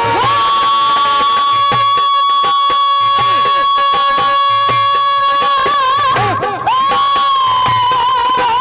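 Rajasthani folk devotional music: a long high note held steady for about five seconds, then a short wavering phrase, a brief break and a fresh held note, over a regular drum beat.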